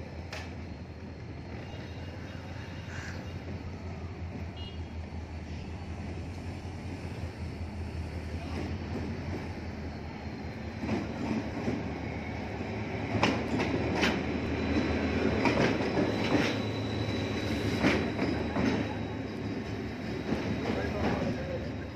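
A Pakistan Railways HGMU-30 diesel locomotive running light past on the track: a steady diesel engine drone that grows louder from about halfway through, with the wheels clattering over rail joints in the second half and a thin high whine.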